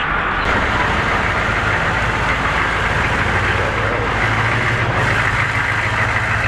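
A Humvee's engine running as the truck rolls slowly past, a steady low engine note that grows a little stronger about halfway through.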